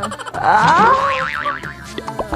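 Comic cartoon-style sound effect edited over background music: a pitched glide rising, then a quick wobble up and down before it fades.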